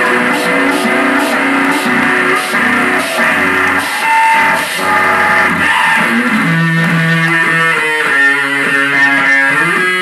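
Live rock band playing loudly, with electric bass and guitar. About six seconds in, the playing turns to short, choppy notes.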